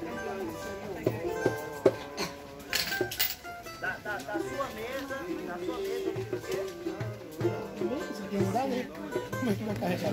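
Live pagode music from a small group: plucked strings with voices over them.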